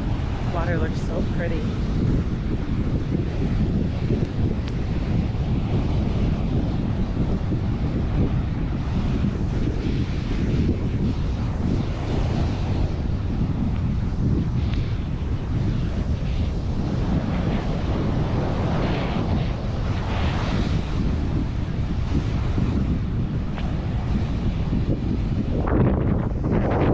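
Strong wind buffeting the microphone with a steady low rumble, over ocean surf breaking and washing up the beach.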